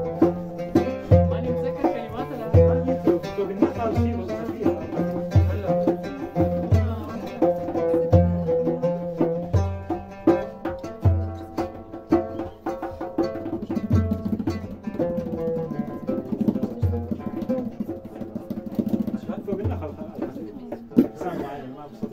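Live oud and acoustic guitar playing together, plucked melody over a deep low beat that falls about every second and a half. The playing thins out in the last part.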